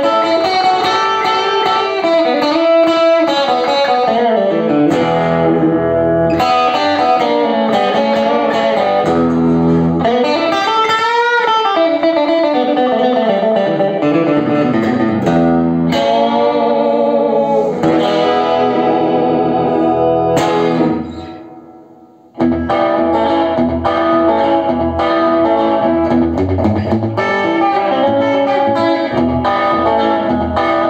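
Gretsch G5420T hollow-body electric guitar played through an amplifier. The melody has wavering, bending notes, with a wide rise-and-fall in pitch about eleven seconds in. About two-thirds of the way through it dies away into a brief pause, then the playing starts again.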